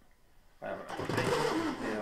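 Hands rubbing and squeezing an inflated latex balloon, giving a loud rubbing noise with wavering squeaks that starts about half a second in.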